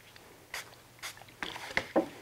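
A few short, soft scuffs and rustles of a crumpled tissue wiping and dabbing across damp watercolor paper against a mat board edge, lifting paint. They are clustered toward the end.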